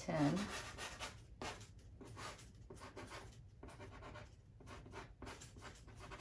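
A soft pastel stick rubbing and scratching across pastel paper in a run of short, irregular strokes, faint.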